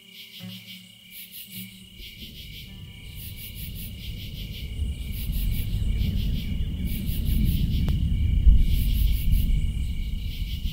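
Insects chirping in a high, pulsing pattern that repeats about once a second. Under them, guitar music ends about two seconds in, and a low rumble then builds, loudest near the end.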